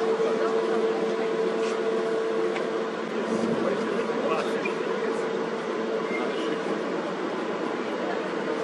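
A steady mechanical hum at a constant pitch, with no knocks or sudden changes.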